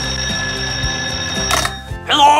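Telephone ringing as a steady high ring over background music, cutting off about three-quarters of the way through, followed by a brief burst of noise.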